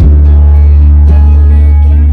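A live rock band playing, with electric guitars over a loud, held bass note. A new chord is struck right at the start and rings on.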